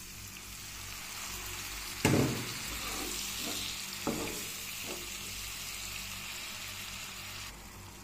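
Water poured into a hot pan of frying fish and vegetables hits with a sudden loud sizzle about two seconds in, then keeps sizzling while it is stirred in, with a sharper knock about two seconds later. The sizzle drops away near the end as the water settles into a gravy.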